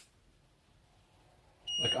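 Near silence, then a short, high electronic beep near the end, typical of a 3D printer's control-panel buzzer.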